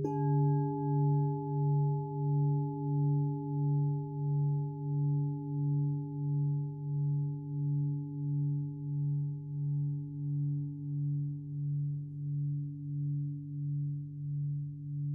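A large hammered Japanese standing temple bell rings on with a deep hum that swells and fades in a slow, even wobble, a little under two pulses a second. Right at the start a lighter strike brings in a higher ringing tone that slowly fades.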